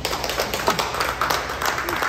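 A small audience applauding, a dense patter of hand claps.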